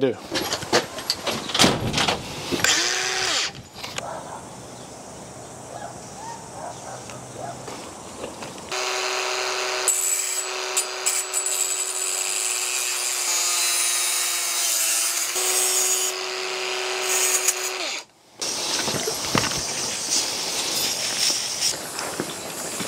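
Bosch angle grinder running and grinding down a metal blade held in locking pliers, a steady high whine with a harsh hiss. The tone sags briefly under load partway through. Before the grinding there are clicks and handling clatter.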